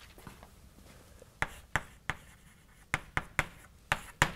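Chalk writing on a blackboard: a quiet first second, then a handful of sharp, irregular taps and short scratches as the chalk strikes and drags across the board.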